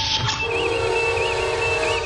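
Starship bridge sound effects: a sharp whooshing hiss at the start that trails off into a steady hiss, over the bridge's warbling electronic background tone, with a low held tone joining about half a second in.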